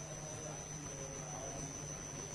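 Faint room tone: a low steady hum with a thin, steady high-pitched whine over it.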